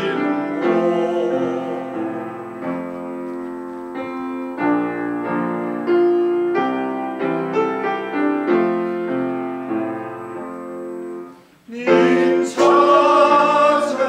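Yamaha grand piano playing a solo interlude in distinct stepwise notes. After a brief pause about eleven and a half seconds in, a male vocal ensemble comes back in, singing loudly with the piano.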